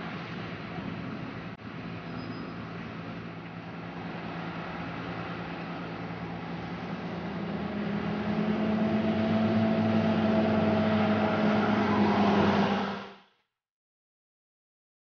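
Articulated dual-mode bus driving past, its drive humming steadily and growing louder about halfway through as it comes closer and pulls on. The sound cuts off suddenly near the end.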